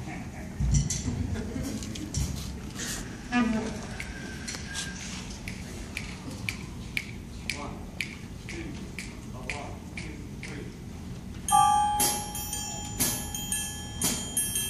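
Quiet auditorium sounds: scattered clicks, knocks and faint murmuring while a school jazz band settles. About eleven seconds in, the band begins to play, with a held note and bell-like strikes about twice a second.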